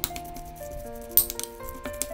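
A metal spoon clinking and scraping against a glass bowl while stirring minced raw chicken, with a cluster of sharp clinks about a second in. Background music with sustained notes plays under it.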